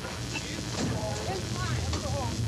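Indistinct voices in old field-recorded audio, over a steady low hum.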